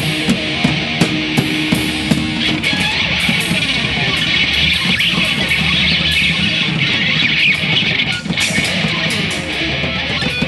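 A live rock band playing: distorted electric guitar over electric bass and a drum kit at a steady beat. Held low notes in the first couple of seconds give way to a denser guitar passage.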